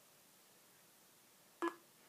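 A single short electronic beep about one and a half seconds in: Zu3D's frame-capture sound as the time-lapse takes a picture. Otherwise faint room tone.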